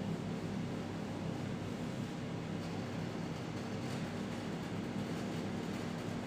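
A steady low hum with hiss underneath, unchanging throughout: background noise with no distinct event.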